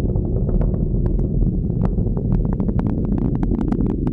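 Falcon 9 first stage's nine Merlin engines firing in ascent, heard as a loud, steady low rumble with sharp crackling throughout.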